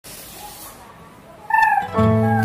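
Faint room noise, then about one and a half seconds in a single short high-pitched cry that falls slightly in pitch.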